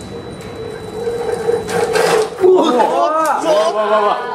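A shake table runs with a steady hum under a balsa-wood tower model as the model shakes and leans over toward collapse. In the second half, people's voices break out in loud, rising exclamations.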